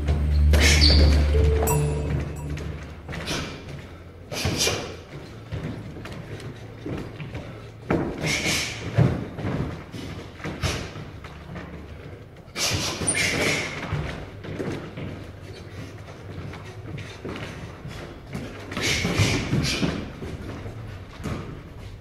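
Boxing sparring in a large hall with some echo: scattered thuds of gloved punches and scuffing footwork on a wooden floor, coming in bursts every few seconds. Music plays for the first couple of seconds, then stops.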